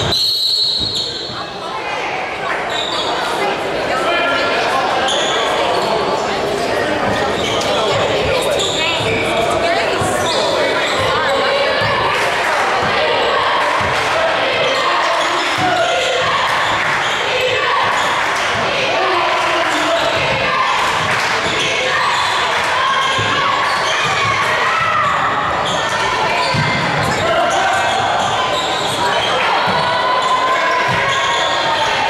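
Basketball dribbled and bouncing on a hardwood gym floor during play, with voices of players and spectators talking and calling out throughout, the whole mix echoing in a large gym.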